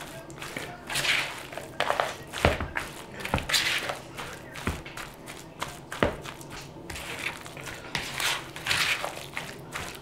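A spatula stirring shredded hash browns through a thick sour cream and cheese mixture in a plastic bowl: irregular wet scraping strokes, with a few short knocks against the bowl.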